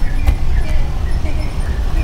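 Open-sided tour bus moving, heard from a passenger seat: a steady low rumble of engine and road noise, with a brief knock just after the start.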